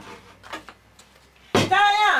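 A short, loud vocal call with a wavering pitch about a second and a half in, after a near-quiet stretch with a few faint clicks.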